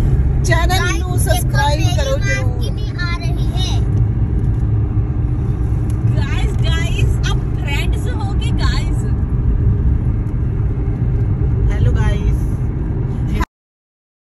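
Steady low rumble of road and engine noise inside a moving car's cabin, with voices at times over it. The sound cuts off suddenly near the end.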